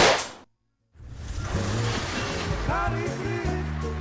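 A single loud pistol shot that rings and dies away within half a second, followed by a moment of silence; background music then comes back in about a second later.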